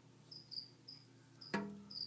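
A cricket chirping faintly: short, high chirps about three times a second. A click and a brief low voiced sound come about three-quarters of the way through.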